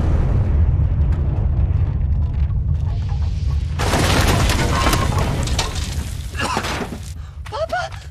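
A gas explosion destroying a house: a deep, continuing rumble, with a fresh burst of crashing, shattering debris about four seconds in that fades away over the following seconds.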